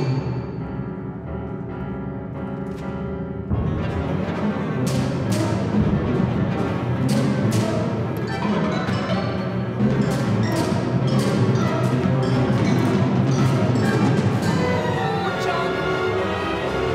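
Symphony orchestra playing: a quieter held passage, then about three and a half seconds in the orchestra comes in louder, with repeated sharp percussive strikes over the sustained strings.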